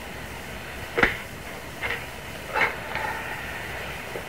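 A sharp thud about a second in, then two softer clicks, over the steady hiss of an old television audio recording.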